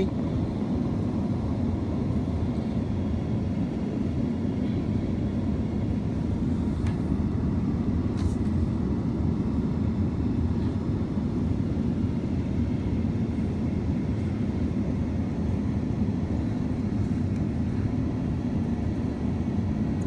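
Steady low rumble of an idling vehicle engine, even and unchanging throughout.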